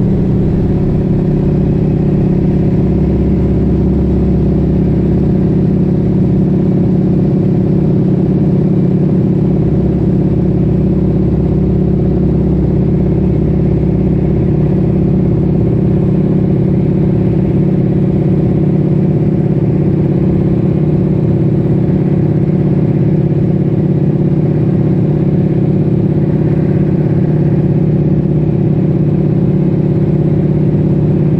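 The nine-cylinder Pratt & Whitney R-1340 Wasp radial engine of a North American Harvard running steadily in flight, heard loud from inside the cockpit.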